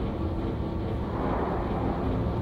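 A steady low rumble of background ambience, with no distinct event standing out.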